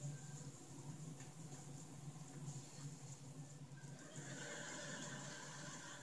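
Faint room tone with a steady low hum and light hiss; the hiss rises slightly about four seconds in.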